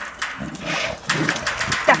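Young lions and tigers calling and growling at the fence as they are hand-fed meat, with a woman's voice saying a word near the end.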